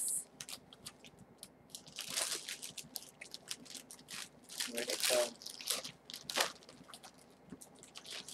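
Clothes being handled and rummaged through in a pile: fabric rustling with scattered crinkles and small clicks, in short irregular bursts.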